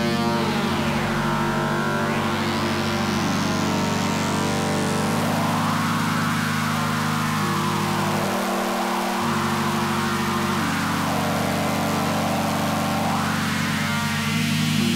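Electronic music played live on synthesizers from a MIDI keyboard: sustained low synth chords under a hissing filter sweep that dips down in the first two seconds, climbs to a high hiss by about five seconds, then swells up and down.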